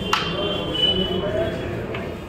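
A single sharp click of a carrom striker knocking against the wooden frame of the carrom board, followed by a faint high tone lasting about a second, over background chatter.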